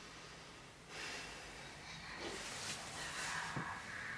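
A person's audible, noisy breath close to the microphone, starting abruptly about a second in and lasting a few seconds.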